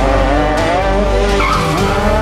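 A rally car's engine revving hard at high revs, its pitch falling and rising as it runs through the gears and throttle, with a short tyre squeal about one and a half seconds in.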